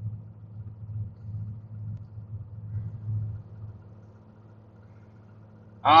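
Low, steady hum of a semi truck's engine idling, heard from inside the sleeper cab. It is louder and uneven for the first few seconds, then settles quieter.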